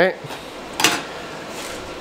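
A single short clatter a little under a second in, as a hand screwdriver is set down on a hard tabletop.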